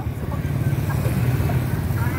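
Steady low rumble of a running motor vehicle, with faint voices over it.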